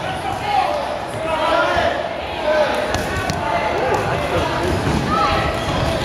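Rubber dodgeballs thrown and bouncing off the hardwood floor of a gymnasium, with a couple of sharp knocks about halfway through, under continuous shouting and cheering from players and sideline teammates, echoing in the hall.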